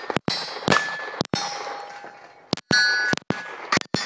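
A quick string of about ten gunshots at irregular spacing, several followed by the clear ringing of hit steel targets. The recording briefly cuts out right after some of the loudest shots.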